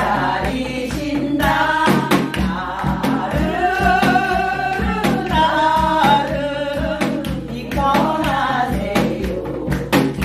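A woman singing a Gyeonggi minyo Korean folk song, holding long notes with a wide, wavering vibrato, over a steady beat of sharp percussive strokes.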